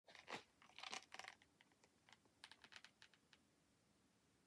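Faint crinkly handling noises: a scatter of small clicks and rustles in two short clusters, one in the first second and a half and another about two and a half seconds in.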